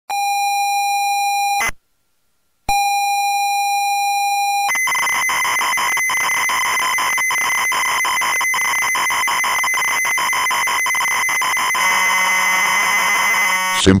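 ZX Spectrum cassette loading sound: a steady high leader tone, a break of about a second, the tone again, then from about five seconds in the noisy screech of the program data loading.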